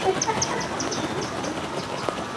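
Outdoor background noise with a small bird giving a rapid series of short, high chirps, about five a second, which stop about a second and a half in.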